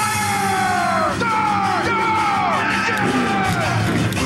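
Race cars speeding past one after another: about four high engine whines, each falling in pitch as a car goes by, over background music.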